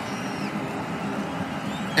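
Steady, even background noise without speech.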